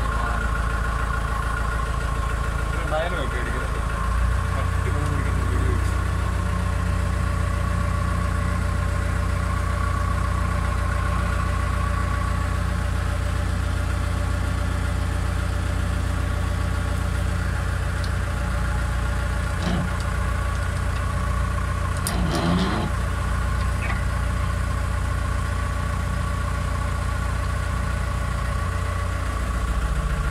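An engine running steadily at idle, a constant low hum with steady higher tones over it, with brief voices about 3 seconds in and again around 22 seconds.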